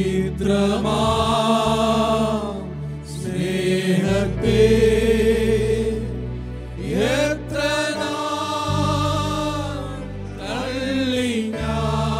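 Group of men singing a Malayalam Christian song together over keyboard accompaniment with sustained low bass notes. Four long held phrases with short breaks between them, several scooping up in pitch as they begin.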